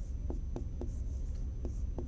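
Pen tip tapping and scraping on a writing board while drawing lines, a string of short irregular ticks about three a second, over a steady low hum.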